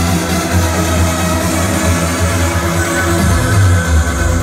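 Trance music from a DJ set played loud over a nightclub sound system and heard from the dance floor: held synth chords over a heavy bass line, with a deeper bass coming in near the end.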